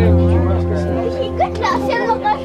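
Background music with held chords and a deep bass line, with people's voices talking and exclaiming over it.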